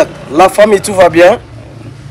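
A man talking in short, loud phrases for the first part. After that a steady low hum carries on to the end.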